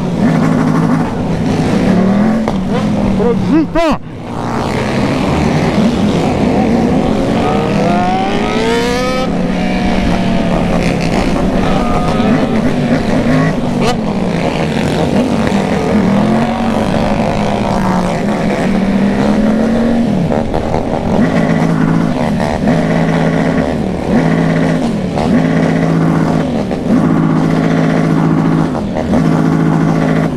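Motorcycle engine running under way, its pitch rising and falling as the throttle is worked, with wind rushing over the microphone. Engine revs climb steeply about eight to ten seconds in. In the last third the throttle is blipped about once a second.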